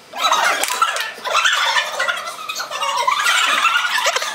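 Several women's voices at once making a continuous, overlapping vocal noise into hands cupped over their mouths, starting just after a brief hush.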